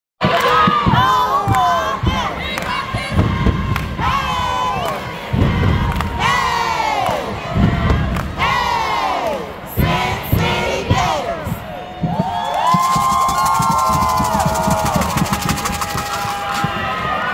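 Crowd cheering and shouting, with loud yells that swoop up and fall in pitch about every second or two. In the last few seconds, several voices hold long, level shouts together.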